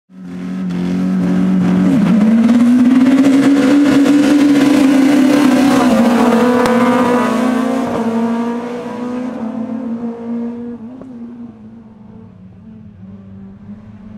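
Several small rallycross hatchbacks, among them a Škoda Fabia MK1 of the STC-1600 class, racing at full throttle, engine pitch dropping at a gear change about two seconds in and climbing again. The sound stays loud for the first eight seconds or so, then fades as the cars pull away.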